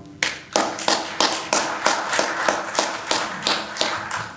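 Applause: hands clapping in a steady rhythm of about three claps a second.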